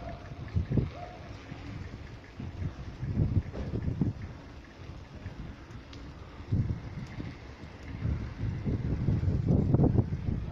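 Wind buffeting the microphone on a moving bicycle, coming in irregular low gusts that grow stronger in the second half.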